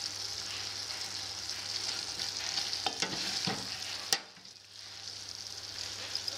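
Green tomato chutney sizzling in oil in a stainless steel pot while a wooden spoon stirs it, with a few knocks of the spoon against the pot. About four seconds in, a sharp knock is followed by a brief drop in the sizzle before it returns.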